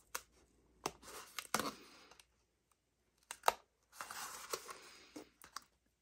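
Cardstock strip being wrapped and pressed around the base of a small paper box: soft paper rustling with a few light taps and clicks scattered through.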